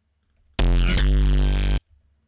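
A bass patch on the Serum software synthesizer sounding a single held note of about a second. It starts about half a second in and cuts off sharply, as the note is auditioned while being placed in the MIDI editor.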